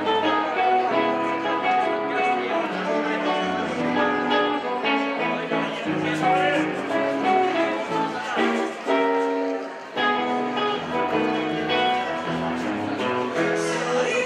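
Live ensemble of acoustic guitars and other plucked string instruments playing a tune, with voices singing along.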